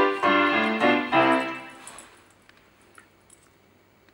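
Electronic keyboard playing a short phrase of piano-voice chords. The last chord rings and fades out about two seconds in.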